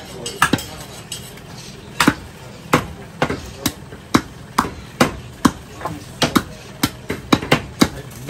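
Butcher's cleaver chopping beef on a round wooden chopping block: a run of sharp, irregular chops, about two a second, coming quicker near the end.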